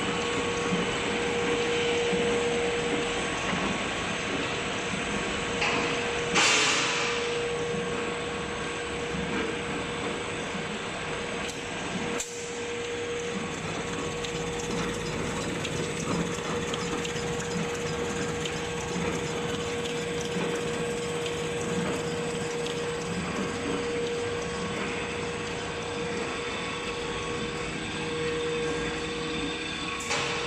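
L-fold dispenser napkin paper machine running at production speed: a steady mechanical whir with a constant hum, and a short hiss about six seconds in.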